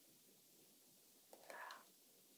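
Near silence: room tone, with a faint short breath about one and a half seconds in.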